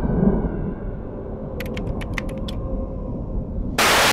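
A low rumbling drone with a faint steady hum, broken about halfway through by a quick run of seven or eight sharp clicks. It ends in a short, loud burst of static hiss.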